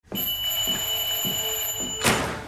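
An electric bell or buzzer ringing insistently, a steady high ring with a pulse about twice a second: someone ringing at the flat's door.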